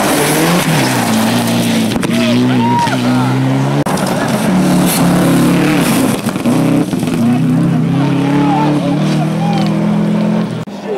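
Rally car engines revving hard on a gravel stage, the pitch climbing and dropping again and again as the cars shift through the gears. First a Mitsubishi Lancer Evolution, then a Subaru Impreza.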